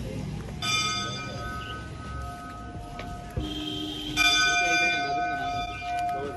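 Temple bells struck three times, about half a second in, then again at about three and a half and four seconds in, each strike ringing on with several clear steady tones that slowly fade.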